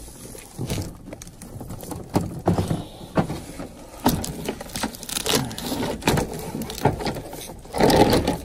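Knocks, bumps and scraping as a plastic portable dehumidifier is handled, passed through a small basement window and set down. The knocks come irregularly, with a louder cluster near the end.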